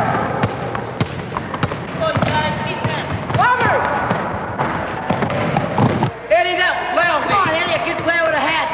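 Basketball being played on a wooden gym floor: the ball bouncing and thudding, with sharp knocks throughout and boys' shouting voices rising over it about midway and again near the end.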